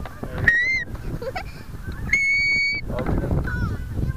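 High-pitched children's voices: a short rising squeal about half a second in and fainter calls later, over low rumble. A steady high beep lasts just under a second, about two seconds in.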